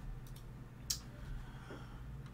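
A single sharp click of a computer keyboard key about a second in, with a few fainter ticks over a low steady room hum.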